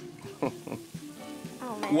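Dry white powder poured from a small glass into a tall glass vase of water, a soft steady hiss, over background music.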